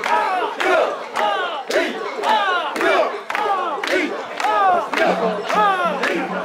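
Crowd of mikoshi shrine bearers chanting a rhythmic call in unison, "soiya", about two shouts a second, with hand claps among the voices.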